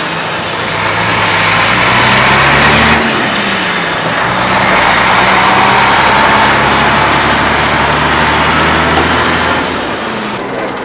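Heavy truck engine running, its pitch climbing for the first few seconds, then dropping back abruptly and running steadily.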